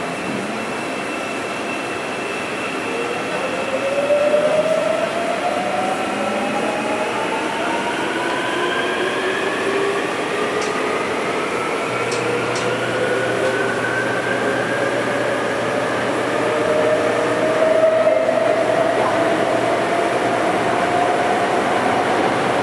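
KORAIL Airport Railroad electric train heard from inside the car as it pulls out of a station: the traction motors' whine climbs steadily in pitch as the train gathers speed, over continuous wheel and track rumble. A low steady hum joins about halfway through.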